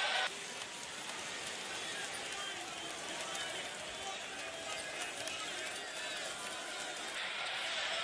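Steady murmur of an arena crowd, with faint, indistinct voices heard through it.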